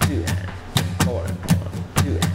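Steel-string acoustic guitar strummed in a steady rock rhythm, about four strums a second, with the accents on beats two and four.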